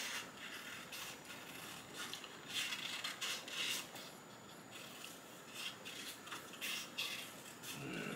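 Small scissors snipping through a sheet of colored paper in short, quiet cuts, with the paper rustling as it is turned between cuts.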